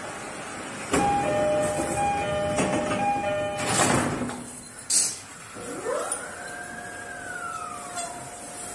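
E231-series commuter train's door-closing chime, a two-note signal alternating about three times. The doors then shut with a rush of noise, and a sharp air hiss follows about a second later, typical of the brakes releasing. A rising and then slowly falling whine with a steady tone under it follows: the electric traction equipment starting up as the train begins to pull away. The whole is heard with an added echo.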